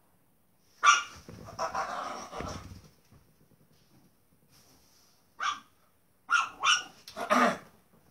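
Dog barking: a few short barks, then a quick run of three or four near the end.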